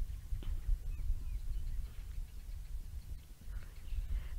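Outdoor bush ambience: a steady low rumble with a few faint, short bird chirps in the first couple of seconds.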